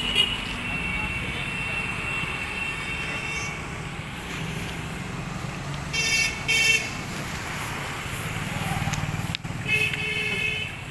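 Street traffic with a steady low engine rumble. Vehicle horns toot briefly at the start, twice in quick succession about six seconds in, and again near the end.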